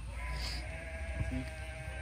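An animal bleating once: a single drawn-out, steady call of about a second and a half.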